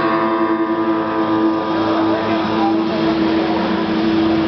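A steady low drone note holds on after the acoustic guitar strumming stops, with a murmur of voices in the room rising under it.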